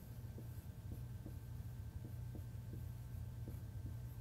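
Dry-erase marker writing on a whiteboard: faint short strokes of the tip on the board, over a steady low hum.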